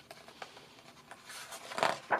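A hand turning a page of a hardcover picture book: a faint paper rustle that swells near the end as the page is lifted.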